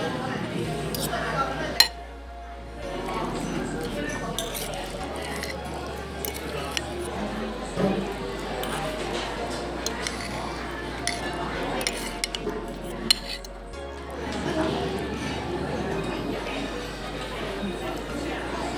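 Metal fork and spoon clinking and scraping against a ceramic plate while cutting through chow mein noodles, with a sharp clink about two seconds in and another near thirteen seconds.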